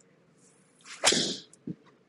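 Golf iron swung through and striking a ball off a hitting mat: a swish builds for about half a second, then a sharp crack of the strike about halfway through, followed by a softer knock about half a second later.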